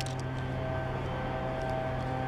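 A steady low hum with even overtones, unchanging in pitch and level, with a few faint ticks.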